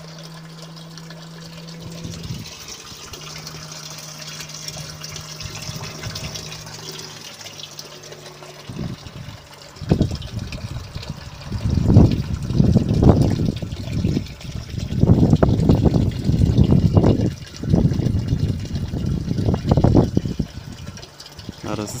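Small water pump humming steadily, with water trickling through the panel's cooling run; the hum drops out briefly a couple of times. From about ten seconds in, loud irregular rumbling gusts drown it out.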